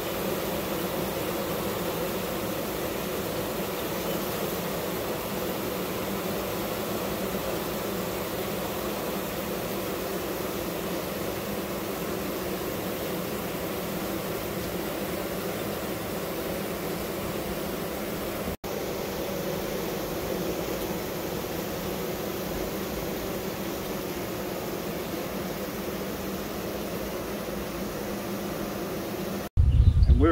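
Steady hum of a honeybee colony crowding an open brood frame, a low even drone, with a brief dropout about two-thirds of the way through.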